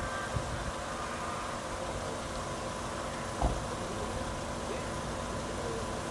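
A small boat motor running steadily at low speed: an even hum over a low rumble, with one short knock about three and a half seconds in.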